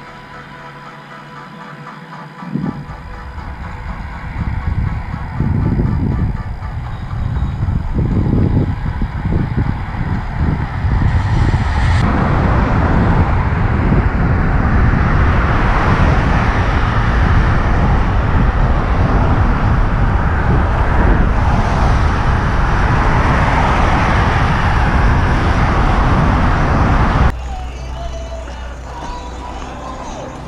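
Wind rushing over the microphone with tyre rumble as a mountain bike is ridden fast. It builds in gusts, stays loud and steady for about fifteen seconds, and cuts off suddenly near the end.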